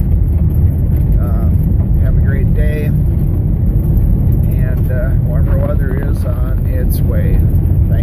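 Steady low rumble of a car driving on a gravel road, heard from inside the cabin. A voice talks faintly over it at intervals.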